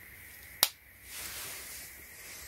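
A single sharp snap of an AirPods Pro charging case lid clicking shut, followed by about a second of soft rustling as the case is handled and set down.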